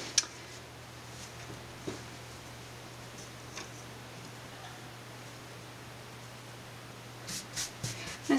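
Faint rustling and rubbing of soft double gauze cotton fabric as it is folded and smoothed by hand on a wooden table, with a few faint ticks, over a steady low hum.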